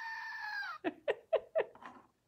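Screaming Goat novelty toy letting out its recorded scream when pressed. The long, steady held cry falls away a little under a second in, and a quick run of about five short falling sounds follows.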